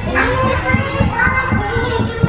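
Loud fairground music with singing and a steady beat, mixed with children's shouts and chatter.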